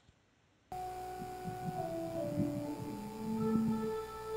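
Church organ playing the introduction to the sung Introit: held notes moving step by step through the melody, with chords sounding together. It starts suddenly under a second in.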